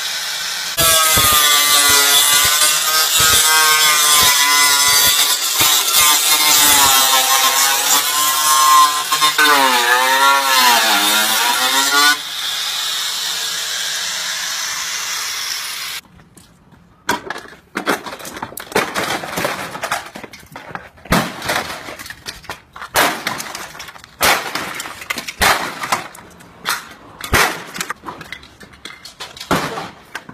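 Handheld power tool cutting into a scooter's body: a loud grinding whine whose pitch wavers and dips as the tool bites, stopping abruptly about halfway through. After that come scattered knocks and scuffs.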